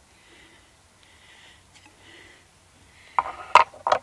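Soft breathing close to the microphone, coming in short hisses about once a second. Near the end there is a brief vocal sound and a sharp click.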